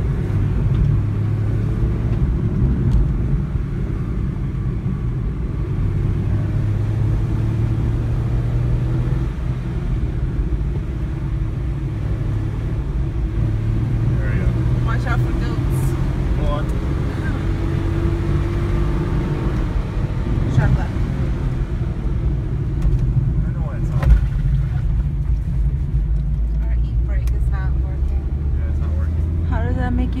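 Rental car's engine and road noise heard from inside the cabin while it is driven hard on a winding road, the engine pitch rising and falling with acceleration and gear changes. A sharp knock about 24 seconds in.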